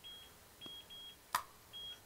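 Faint electronic beeping from an unidentified device: four short, high-pitched beeps at uneven spacing, with one sharp click about two-thirds of the way through.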